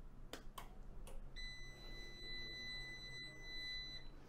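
Three short clicks from pressing the lithium battery's power button, then one steady high-pitched electronic beep lasting about two and a half seconds as the battery switches on and the inverter system powers up.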